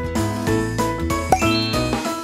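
Background music with bell-like chiming notes, ending in a rising run of chimes. A single sharp click sounds just past a second in.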